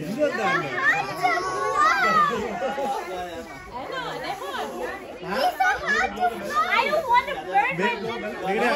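Children's voices shouting and calling over one another, many high voices overlapping without a break.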